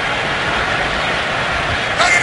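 Stadium crowd noise: a steady, even roar with no single voice standing out.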